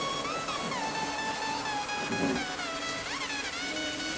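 Background music: a pitched melody that slides up and down between notes, over a steady backing.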